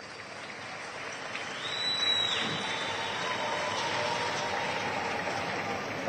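Audience applauding in a large hall, swelling over the first two seconds and then holding steady, with a short whistle about two seconds in.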